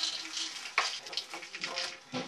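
A clear plastic bag crinkling and rustling in irregular bursts as it is handled and pulled out of a fabric bag, with one sharper crackle just under a second in.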